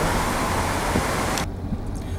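Steady road and wind noise of a car driving at speed, heard from inside the car. About a second and a half in, it cuts off suddenly to a quieter low hum of the car interior.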